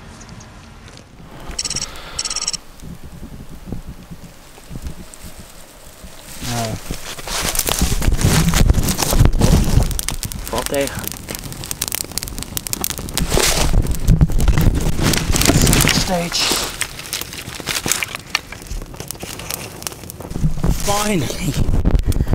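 A small fire of dry twigs and tinder catching and burning up, crackling densely over a rushing sound of flames from about six seconds in. Short voiced exclamations come in now and then.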